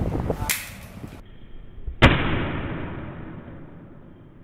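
A single sharp bang about halfway through, dying away over about two seconds, after a brief spoken "no" at the start.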